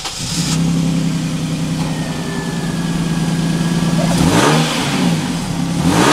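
Toyota Crown's 1JZ 2.5-litre inline-six heard at the exhaust, idling steadily. About four seconds in it is blipped once, the pitch rising and falling, and a second blip starts near the end. Its deep note is one the speaker likens to an old Mercedes 500 V8.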